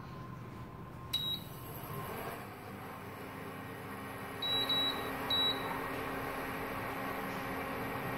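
Zebra induction cooktop's touch control panel beeping as its buttons are pressed to switch it on and set the power. One short high beep comes about a second in, then three quick beeps between about four and a half and five and a half seconds.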